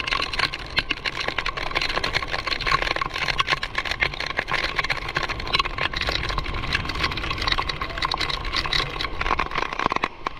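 Heavy rain with wind on the microphone: a dense, steady crackle of raindrops over a low rumble.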